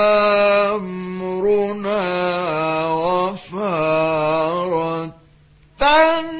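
A male voice reciting the Quran in the melodic mujawwad style. It opens on a long held note, moves into ornamented melodic phrases, and stops briefly near the end before the voice comes back in.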